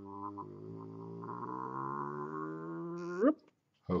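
A man's long, low hum, held for about three seconds: it sinks slightly in pitch, stays steady, and glides up just before it stops near the end.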